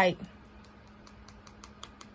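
Manicured fingernails tapping on a phone: a run of light, irregular clicks, several a second.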